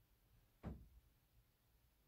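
Near silence: quiet room tone, broken once, a little over half a second in, by a single short knock that dies away quickly.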